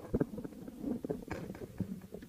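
Microphone handling noise: scattered soft knocks, bumps and rustles as a hand adjusts the microphones on their stand.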